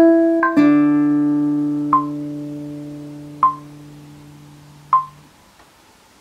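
Classical guitar played slowly: two or three plucked notes, then a chord left to ring and die away over about five seconds. Short metronome-like clicks keep the beat about every second and a half.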